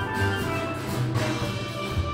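A steel band playing a tune together: several steel pans struck at once, bright ringing notes over low bass-pan notes.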